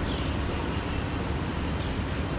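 Steady low rumble of city road traffic, with no distinct events.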